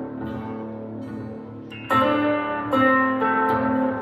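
Stratocaster-style electric guitar played fingerstyle: notes ring on and fade, then new notes are plucked about two seconds in and again a moment later.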